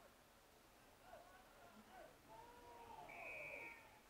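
Faint, distant voices talking, with a single short, steady, high whistle blast about three seconds in.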